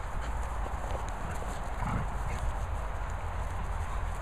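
Dogs romping together on grass: soft, uneven paw footfalls and scuffling, over a steady low rumble.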